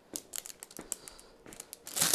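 Clear plastic poly bag crinkling as it is handled, an irregular run of small crackles, with a louder rustle right at the end.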